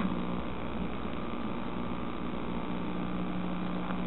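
Steady electrical hum with a faint hiss underneath: the background noise of a low-fidelity sampled film soundtrack, with no speech or music over it.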